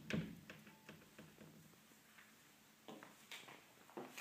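Near silence: quiet room tone with a few faint scattered clicks and taps, a little stronger near the end.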